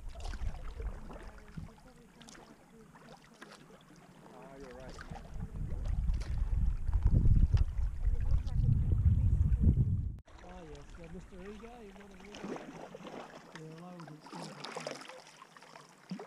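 Sea kayak being paddled, with paddle strokes splashing and dripping and wind rumbling on the microphone, loudest from about four to ten seconds in. After a sudden break about ten seconds in, indistinct voices of other paddlers carry across the water.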